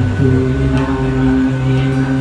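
Two acoustic guitars playing a slow ballad accompaniment between vocal lines, the chords ringing on, with a chord change shortly after the start.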